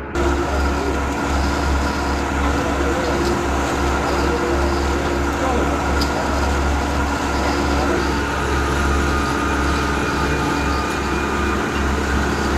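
Horizontal metal-cutting band saw running as its blade cuts through a round bar clamped in the vise: a steady mechanical hum with a low drone and a few steady whining tones, cutting in abruptly at the start and holding level throughout.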